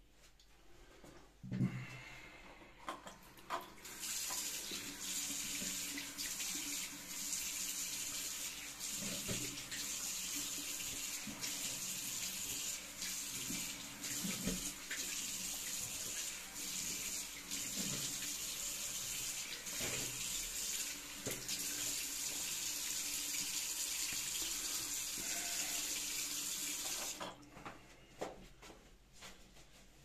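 Bathroom tap running into a sink with a steady rush of water and occasional splashes and knocks, then turned off abruptly near the end. There is a single knock just before the water starts.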